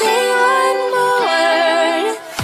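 Background pop song: a singer holds long sustained notes over soft accompaniment, with no beat.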